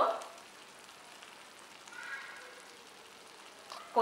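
Spiced vegetable gravy with ghee sizzling and bubbling faintly in a steel pan over a high flame. The ghee is starting to separate from the masala, the sign that the gravy is cooked.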